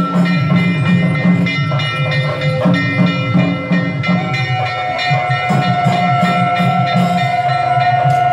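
Temple ritual music: drums beating a quick, regular rhythm under steady bell ringing, with a long, slightly wavering wind note held from about four seconds in.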